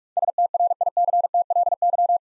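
Morse code sent at 45 words per minute as a single mid-pitched beeping tone, keyed in rapid dits and dahs, spelling the word "strictly". It begins a moment in.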